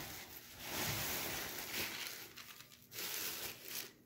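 Plastic bags rustling and crinkling on and off as hands dig in a black plastic garbage bag and pull out a plastic-wrapped package of foam plates.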